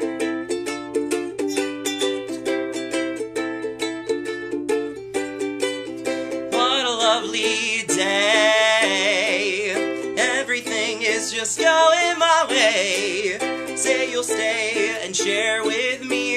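A ukulele strummed in a steady rhythm as a song intro. About six seconds in, a man starts singing over the strumming, his voice wavering with vibrato.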